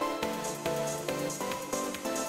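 Electronic background music with a steady beat and a melody of short notes.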